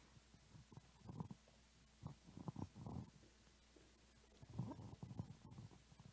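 Near silence broken by a few faint, irregular low thuds and rumbles: handling noise from a handheld microphone.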